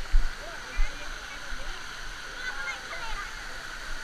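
Water from a splash-pool play structure pouring steadily down its steps and into the pool. Two dull bumps come in the first second.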